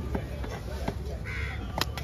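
Large knife cutting a yellowfin tuna on a wooden chopping block: a few light cutting knocks, then a sharp knock of the blade on the wood near the end. A short harsh bird call sounds once in the middle.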